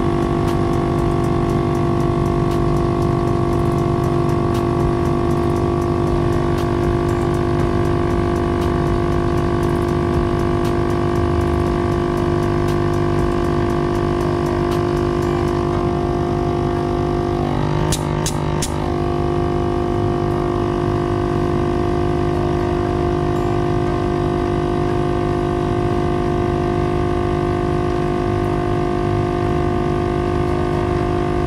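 ARB portable air compressor running steadily with a droning hum, pumping air through a four-way manifold to air up all four off-road tires from about 30 psi. A few sharp clicks come a little over halfway through.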